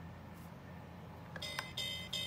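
Electronic chime from the Bucky pirate-ship toy's speaker, starting about a second and a half in after two light clicks, over a low steady hum.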